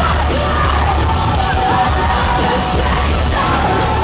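Live rock band playing loudly, with heavy bass and drums under a singer's vocal that holds a long note in the middle, recorded from within the arena crowd.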